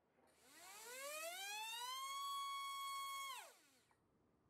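T-Motor F20 1406-4100KV brushless motor driving a Gemfan 4045 two-blade propeller on a static thrust stand, run on 3S: the whine rises as the throttle ramps up over about a second and a half, holds steady at full throttle for over a second, then drops quickly as the motor spins down.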